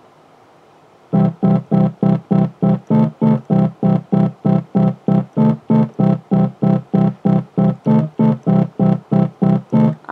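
Electronic home keyboard played in a fast, even staccato, a short low note or chord struck about three and a half times a second, starting about a second in; the pitch shifts now and then.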